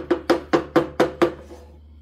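Wooden spoon knocked against the rim of a metal skillet about seven times in quick succession, each tap with a short ring, stopping after a little over a second.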